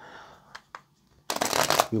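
Tarot cards being handled and shuffled: a soft rustle and a single click, then about a second and a half in a loud rush of cards riffling and sliding across a wooden table as the deck is spread.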